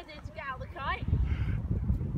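A person laughing in short vocal bursts, followed by a low rumble of wind on the microphone in the second half.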